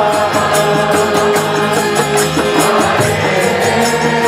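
Devotional kirtan: a group chanting a mantra over harmonium, with a mridanga drum and a steady rhythmic beat.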